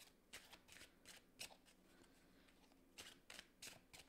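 A deck of tarot cards being shuffled hand to hand: faint, quick card rustles in two runs, with a lull of about a second and a half in the middle.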